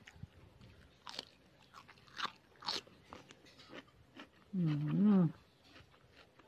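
Crisp crunching and chewing as a stick of raw cucumber is bitten and eaten, with a few sharp crunches in the first three seconds. About four and a half seconds in comes the loudest sound: a person's wavering hummed 'mmm' that lasts most of a second.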